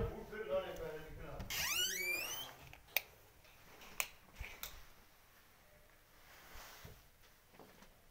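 A door swinging open with a high squeal from its hinges, rising in pitch for about a second, followed by three sharp clicks.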